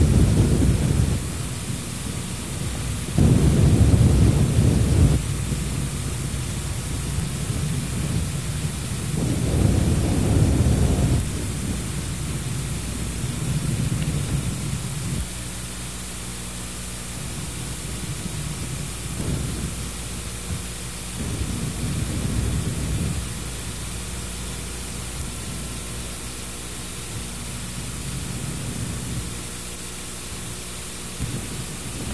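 Wind buffeting an open microphone in irregular low rumbling gusts of a second or two each, the strongest in the first half, over a steady hiss.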